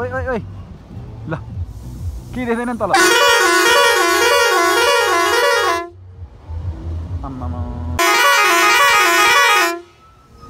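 A vehicle's multi-tone musical horn sounds two long warbling blasts, about three seconds in and again about eight seconds in, over a low engine rumble.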